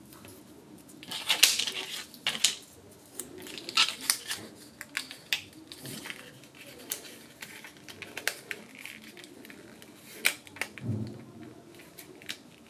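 Card stock rustling and creaking as a folded, taped card frame is handled and its tabs pressed into place, with scattered sharp clicks and taps throughout and a louder rustle about a second in.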